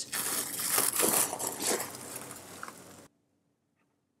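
Plastic cling film crinkling as a film-covered glass dish is handled, stopping abruptly about three seconds in.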